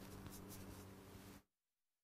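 Near silence: faint room tone with a low steady hum that cuts off to dead silence about one and a half seconds in.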